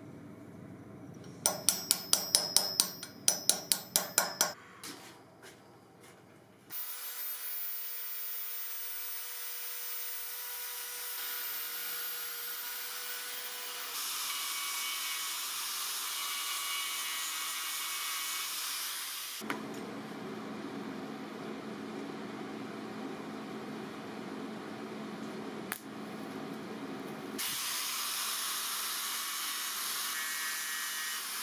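About ten quick ball-peen hammer blows drive a grooved metal peg tight into a hole, each strike ringing. Then, from about seven seconds in, a steady electric welding arc runs in long passes, its tone changing a few times as the joint over the peg is welded.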